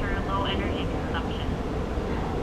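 A man's voice over a public-address loudspeaker, with no words the recogniser could make out, fading after about a second, over a steady low rumble.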